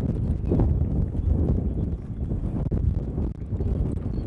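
Wind buffeting the microphone: a continuous, uneven low rumble. A brief hum comes about half a second in.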